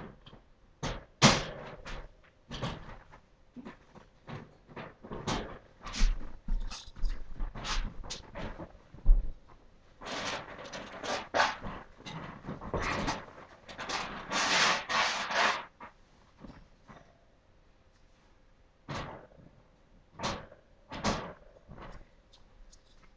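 Irregular knocks, clicks and rustling, with a busier, louder stretch of rustling and clatter from about ten to sixteen seconds in.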